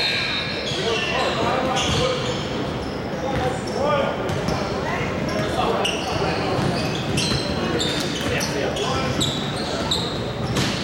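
Basketball bouncing on a hardwood gym floor during a game, with sneakers squeaking and players' indistinct shouts, all echoing in a large gym.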